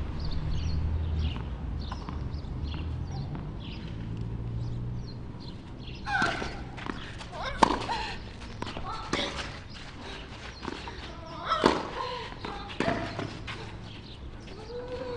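Tennis point on a clay court: sharp racket-on-ball hits a few seconds apart from about six seconds in, with players' short cries between them. Before that, only low background hum and faint repeated chirps.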